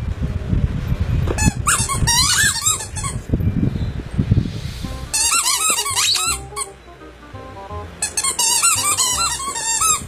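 A dog's squeaky toy ball squeaking in three runs of rapid, high-pitched squeaks as the dog bites and chews it, with dull knocks and rustling underneath.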